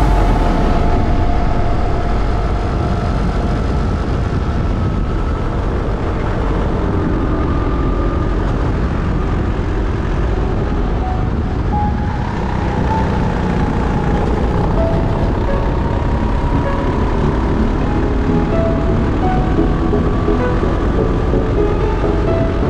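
Racing kart engine heard from the onboard camera as the kart laps, its pitch rising and falling with the revs through the corners and straights, with music underneath.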